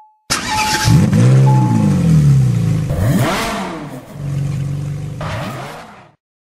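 Car engine sound effect: it catches abruptly, revs up and back down twice, runs steadier, then fades out. Two short high beeps like a dashboard warning chime sound over it in the first two seconds.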